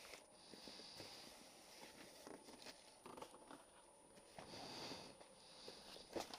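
Near silence with faint rustling and light clicks as a textile motorcycle jacket is handled, lifted out of a cardboard box and laid out flat.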